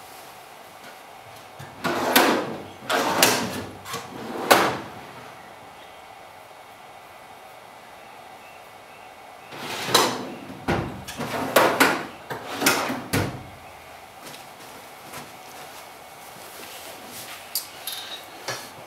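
Rummaging at a workshop storage cabinet: two groups of sliding scrapes and knocks, a few seconds apart, as things are moved and taken out.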